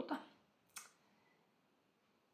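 A woman's voice trailing off right at the start, then a pause with a single short mouth click, a lip smack, about three quarters of a second in, and otherwise near silence.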